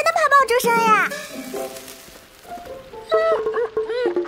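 A high-pitched girl's voice singing a line over light instrumental music; the line wavers and falls away about a second in, short separate notes follow, and another held sung note comes near the end.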